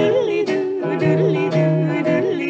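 An early-1950s country-pop string band record playing. A melody line bends up and down in pitch over a bass note that sounds about twice a second.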